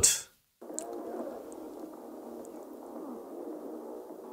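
Muffled, narrow-band film soundtrack playing at low level, cut to silence for a moment and coming back in about half a second in.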